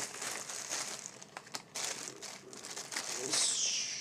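Irregular crinkling and rustling of new socks' packaging and labels being handled. A falling swish comes near the end.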